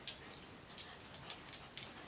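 A small dog scuffling about in play on a hard floor: a few faint, light clicks scattered through the moment.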